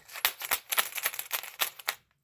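Coins rattling inside a shaken plastic Easter egg: a rapid run of sharp clicks and rattles that stops abruptly at the end.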